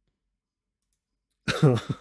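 A man laughing in short quick bursts, starting about a second and a half in.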